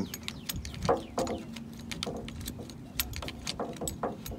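Scattered light metallic clicks and clinks of a folding hex-key tool turning a screw down into the metal clamp of a conventional fishing reel's rod bracket.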